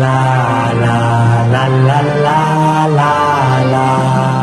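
Channel intro jingle: chant-like vocal music with held notes over a steady low drone.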